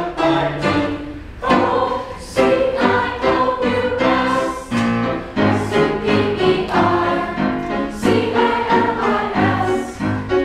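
A mixed high school choir singing together, holding chords that change about every second.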